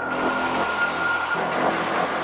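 Live acidcore electronic music: a loud wash of white noise cuts in suddenly over a held high synth tone, with no clear drum beat.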